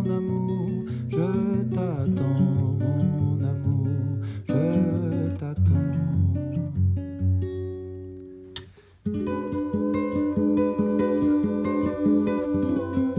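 Acoustic band music led by a nylon-string classical guitar. The playing fades away to a brief near-pause about nine seconds in, then the guitar comes straight back in strumming.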